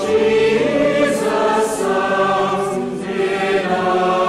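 Choir singing slowly, with long held notes that move from chord to chord.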